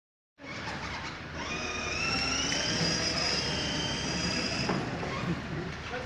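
Electric drive motors and gearbox of a battery-powered children's ride-on Mahindra Thar whining as the toy car drives, the high whine rising a little soon after it sets off and stopping near the end, with people's voices in the background.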